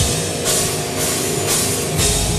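Live deathcore band playing: distorted guitars and drums. There is a hit at the start, then cymbal crashes about every half second over a thinner bass, and the full heavy low end comes back in at the end.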